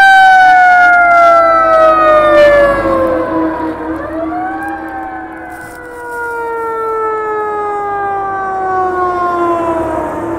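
Fire engine siren, loud, twice winding up quickly and then falling slowly in pitch over several seconds, with a steady lower tone beneath it.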